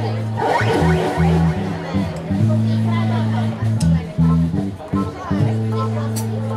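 A small live band playing: held low bass notes step from one pitch to another under electric guitar and keyboard.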